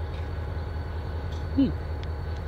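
Diesel locomotives idling in a rail yard: a steady low rumble.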